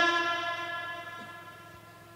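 The tail of a man's long chanted note over a public-address system, held on one pitch and fading out over about a second and a half, leaving a faint steady hum.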